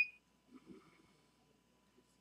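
A short, high keypress beep from the Prova 123 thermocouple calibrator's keypad right at the start, then a couple of faint soft clicks about half a second in, and otherwise room quiet.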